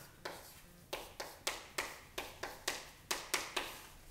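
Chalk tapping on a chalkboard as letters and symbols are written: about a dozen short, sharp taps, coming three or four a second after the first second.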